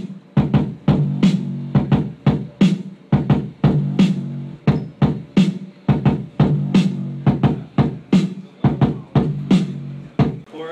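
Programmed drum beat played back over room speakers: sharp kick and snare hits about two to three a second, with a low bass note ringing under them.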